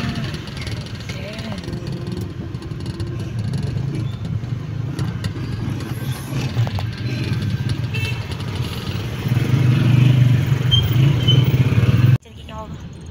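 Car engine and road noise heard from inside the cabin: a steady low rumble that grows louder about nine seconds in.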